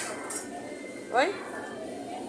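A woman's short questioning 'Oi?' with rising pitch about a second in, over steady shop background noise and faint music.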